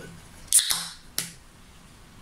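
A ring-pull beer can being opened: a sharp crack with a short fizzing hiss of escaping carbonation about half a second in, then a second short click a little later.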